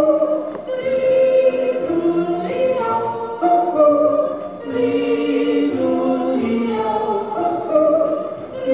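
A group of voices yodelling together, held notes stepping up and down in pitch, with instrumental backing.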